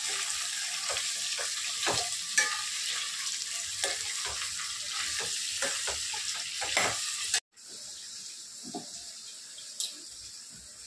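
Diced carrots and potatoes sizzling as they fry in a stainless-steel pan, with a steel spoon scraping and clinking against the pan as they are stirred. The sound breaks off suddenly about seven seconds in and goes on more quietly after.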